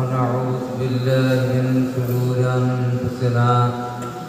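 A man chanting the Arabic opening praise of a sermon into a microphone, in long held notes at a low, steady pitch with short breaks for breath.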